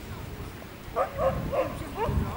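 Small dog giving three quick, high yips about a second in.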